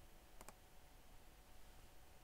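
Two quick computer mouse clicks close together about half a second in, otherwise near silence.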